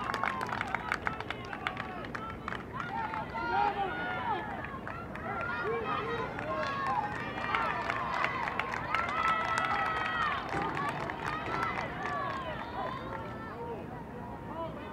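Scattered shouts and calls from players and spectators at a girls' high school soccer game, many short cries overlapping with no running commentary.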